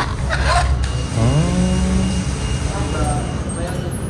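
A person's drawn-out voiced sound, rising in pitch and then held for about a second, starting about a second in, with a shorter, fainter one near three seconds, over a steady low rumble.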